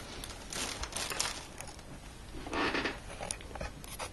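Clear plastic packaging bags crinkling as small accessories are handled, in a few short rustling bursts, the loudest about two and a half seconds in.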